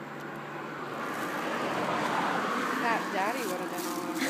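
A passing road vehicle: a broad rushing noise that swells over the first two seconds and eases slightly near the end.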